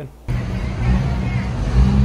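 Steady low rumble of street traffic, starting suddenly about a quarter second in.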